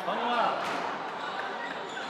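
Squash ball being struck by rackets and hitting the court walls and floor during a rally: a couple of sharp, separate hits, one under a second in and one near the end.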